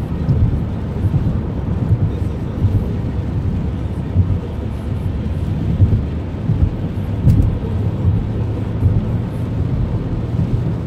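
Road noise inside a moving car's cabin on a wet highway: a steady low rumble of tyres and engine with small uneven swells.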